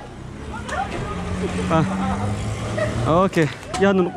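A motor vehicle going by on the road, a steady low engine hum that drops in pitch about two seconds in, under people talking close by.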